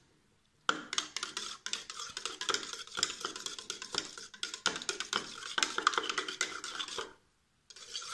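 A spoon stirring milk in a small cup, scraping and clinking quickly against the sides and bottom to dissolve crumbled fresh yeast. It starts after a moment of silence and stops briefly about seven seconds in.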